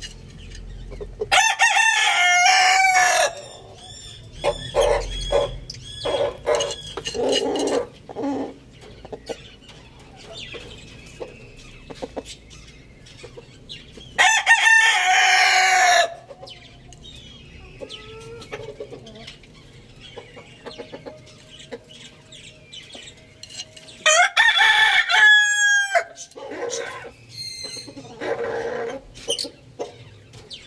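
A rooster crowing three times, each crow about two seconds long, held on one note and falling at the end. Shorter, quieter calls come between the crows.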